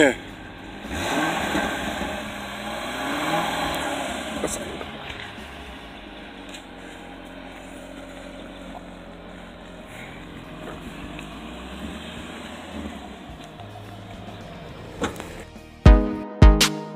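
Chevrolet Corvette V8 revved twice in the first few seconds, each rev rising and falling, then idling steadily.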